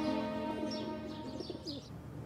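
Soft sustained background music fading out in the first half, with birds chirping and calling in the background ambience.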